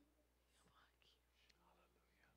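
Near silence, with faint whispering voices.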